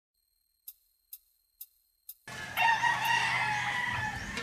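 Four faint ticks about twice a second, then a rooster crowing, one long call over a steady background.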